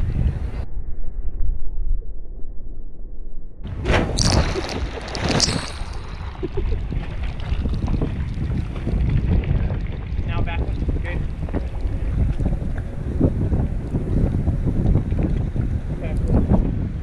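Sea water sloshing and splashing around a waterproof action camera sitting at the waterline, with wind on the microphone. For about three seconds near the start the sound turns dull and muffled, then a loud burst of splashing comes at about four seconds.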